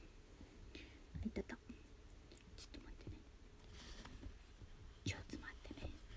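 Soft whispered speech from a single voice, in two short bursts: about a second in and again near the end.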